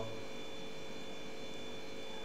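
Steady electrical background hum with a few faint, unchanging high tones and light hiss: the recording's own noise floor.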